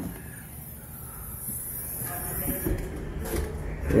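Boat's front door being swung open on gas-spring struts: a low rumble that slowly builds toward the end, with a faint high hiss over the first couple of seconds.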